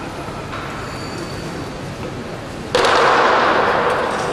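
Lion dance percussion of drum, cymbals and gong crashing in loudly about two-thirds of the way in, after a quieter stretch.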